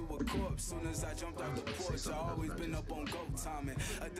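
Hip hop music: a rapping voice over a steady beat with deep bass.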